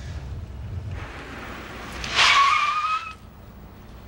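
Car tyres squealing for about a second as the car brakes hard, after a low engine rumble, with a slightly rising squeal that cuts off as the car stops.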